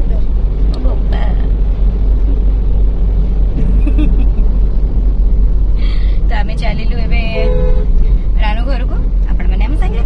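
Steady low rumble of a car's engine and tyres heard from inside the cabin of the moving car, with women's voices talking over it, mostly in the second half.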